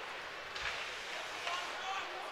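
Ice hockey rink during play: a steady hiss of skates on the ice under faint voices in the arena, with a couple of light knocks of stick or puck, one about a third of the way in and one near the end.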